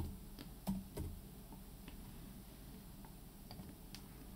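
A few light clicks of a computer keyboard and mouse, three of them within the first second and a couple of fainter ones later, over a quiet room.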